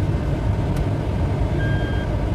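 JAC M4's engine idling with a steady low rumble, heard from inside the cabin. A single click comes a little under a second in as the gear lever is moved. Near the end a steady electronic beep starts, the reverse-gear warning.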